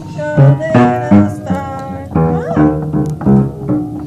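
A musical instrument played one note at a time, about ten notes in uneven succession with no song or melody sung over them.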